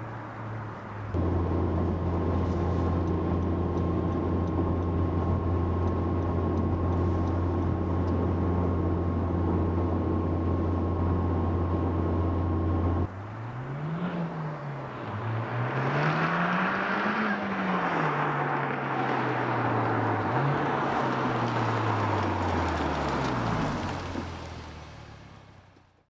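Honda Civic Type R FK8's turbocharged four-cylinder through a Kakimoto Racing Regu.06&R exhaust, held at steady revs for about twelve seconds and then cut off abruptly. A launch follows: the revs climb, drop at an upshift, climb higher, then fall away as the car passes and fades out.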